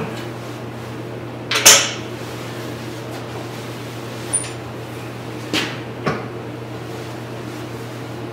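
A few sharp metal knocks and clicks from a wood lathe's chuck and tools being handled. The loudest comes about a second and a half in and smaller clicks follow, all over a steady low electrical hum.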